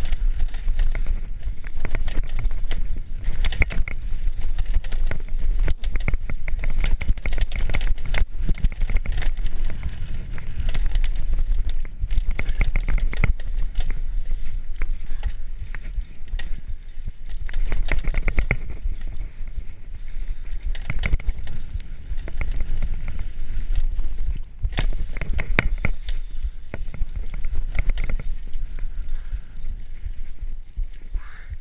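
Mountain bike riding fast down a dirt forest trail, heard from a camera on the bike or rider: tyres running over dirt with frequent knocks and rattles from the bike over bumps and roots, under a heavy low wind rumble on the microphone.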